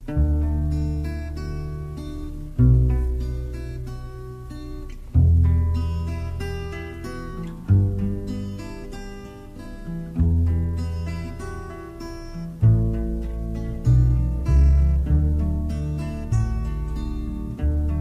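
Acoustic guitars playing a fingerpicked folk introduction, with a deep bass note about every two and a half seconds under picked higher notes, the bass notes coming more often in the last few seconds.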